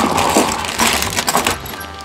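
A bagful of toy cars clattering and rattling together as they are tipped out of a plastic bag onto a tabletop. The clatter dies down about three-quarters of the way through.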